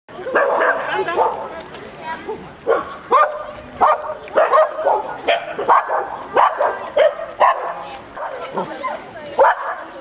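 Mixed-breed dog barking over and over in short, sharp barks, about one or two a second, with people talking.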